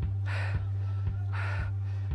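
Two heavy, breathy gasps, about a second apart, over a steady low hum and a soft beat about twice a second.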